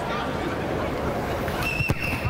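A boot strikes a rugby ball for a penalty kick at goal, heard as one sharp thump near the end, over a steady background murmur. A thin high steady tone starts just before the strike.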